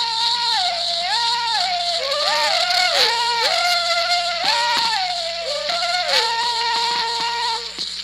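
Banuni (Nasioi-speaking) singers performing a polyphonic yodel: several voices hold long notes against each other and leap sharply between registers. The old archival recording carries steady hiss and a low hum under the voices.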